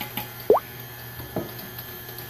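Stand mixer's motor running at low speed as flour is mixed in, a low steady hum, broken by two short chirps that glide in pitch: the first, about half a second in, rises and is the loudest sound, and a weaker one follows near one and a half seconds.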